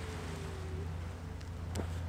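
Steady low rumble of wind and water at the shoreline, with a single sharp click a little before the end as the camera is turned over on its tripod head.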